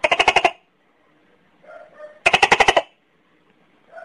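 Tokay gecko calling: two short bursts of rapid clicking, each about half a second long, one at the start and one a little past halfway. This is the chuckling lead-in that comes before its "to-kay" calls.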